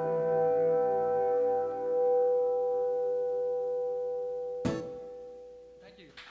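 The song's final chord rings out on guitars and is held steady for several seconds, then fades away. A sharp click comes just before the end.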